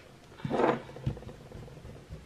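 Hands handling school supplies on a desk over a paper worksheet: a brief rustle about half a second in, then a soft knock.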